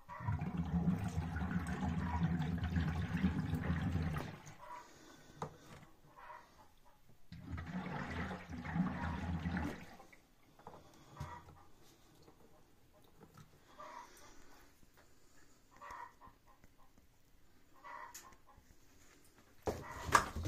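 Air blown by mouth through a hose into a glass demijohn of red wine, the wine bubbling and gurgling as it is stirred up to mix in bentonite and preservative. Two long blows, one at the start and one a few seconds later, then several short, fainter bursts of bubbling.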